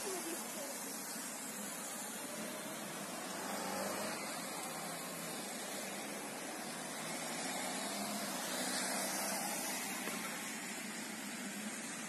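Street traffic: cars driving by on a wet road, a steady hiss of tyres on water with engine noise underneath, and faint distant voices.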